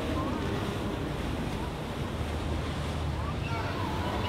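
Steady low hum of a passing boat's outboard motors mixed with the wash of water off its hull and wake, with wind buffeting the microphone.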